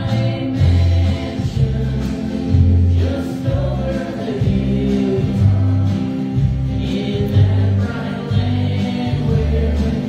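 A live worship band with acoustic guitar and drums playing a song, with voices singing together over a steady beat.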